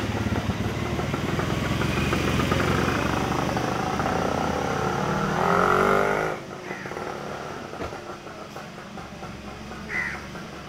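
A vehicle engine running, swelling briefly, then cut off suddenly about six seconds in, leaving quieter background. A short bird chirp comes near the end.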